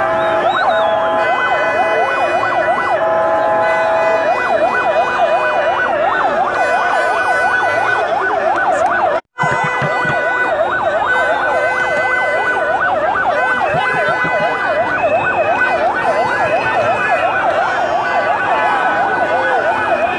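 Several vehicle sirens in yelp mode, overlapping in fast rising-and-falling wails, over steady held tones. The sound cuts out for a moment about nine seconds in.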